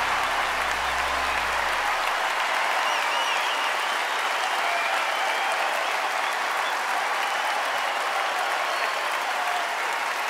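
Large audience applauding steadily. A low held note from the orchestra fades out under the clapping about two seconds in.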